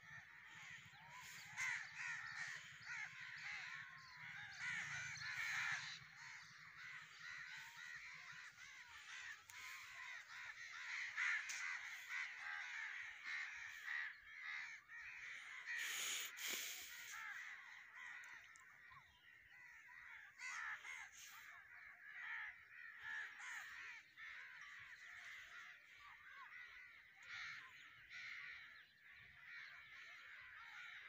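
A large flock of crows cawing together as they gather at their roost, a dense chorus of many overlapping calls that swells and thins. Just past halfway there is a brief rush of noise.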